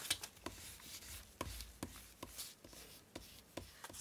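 Soft rubbing, rustling and scattered light taps of paper as hands smooth a sticker down onto a paper journaling card and lift the card.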